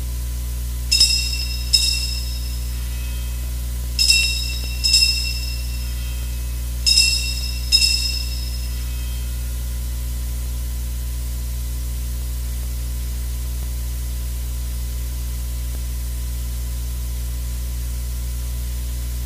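Altar bells rung at the elevation of the chalice after the consecration: three rings, each a pair of quick strikes a little under a second apart, the rings about three seconds apart, each strike briefly ringing out. A steady low electrical hum lies under it.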